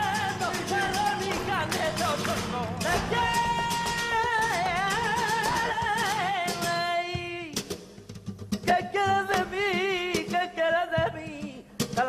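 Live flamenco: a singer's cante with a long, wavering held line over guitar, with sharp hand-claps (palmas) and dancers' heel stamps. The music thins briefly about two-thirds of the way in, then the stamps and singing come back.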